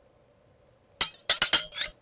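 Four sharp, bright clinks in quick succession starting about a second in, each ringing briefly before the next.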